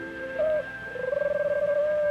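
Cartoon dove cooing: a wavering, pitched coo that starts about a second in and slides downward at its end, over a held note of background music.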